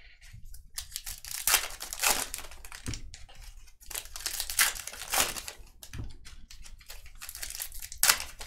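Foil-type wrappers of 2024 Topps Heritage baseball card packs crinkling and tearing as packs are handled and ripped open, in a series of irregular bursts.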